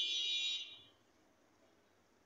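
A high-pitched buzzing tone, lasting about a second and fading out, then only faint background noise.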